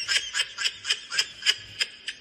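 High-pitched laughter in quick, short bursts, about four a second.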